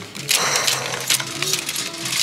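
Plastic clothes hangers clicking and scraping along a metal clothing-rack rail as shirts are flipped through one after another, a quick run of clicks.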